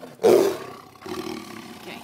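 Angry tiger roaring at close range: one loud roar about a quarter of a second in, then a quieter, longer second call.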